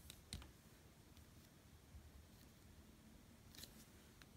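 Near silence with a few faint clicks and taps as a plastic nail-stamping stamper and plate are handled and set down on the table: two taps just after the start and a couple more near the end.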